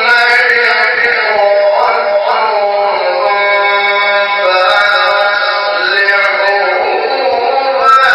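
A man's voice chanting Quran recitation in a slow, melodic style: one long unbroken phrase of held, ornamented notes that wind up and down in pitch.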